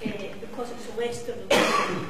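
A single short, loud cough about one and a half seconds in, cutting across a woman's speech.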